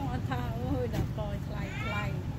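Three short high-pitched vocal calls in quick succession, wavering in pitch, the last one rising near the end, over a steady low hum.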